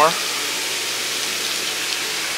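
Hot tub jets running, churning the water with a steady rushing noise.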